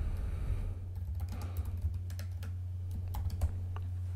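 Typing on a computer keyboard: a run of quick, irregular key clicks over a steady low hum.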